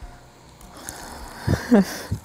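Water poured from a stainless-steel jug into a cooking pot of rice and meat, starting about half a second in, with a short louder burst near the end.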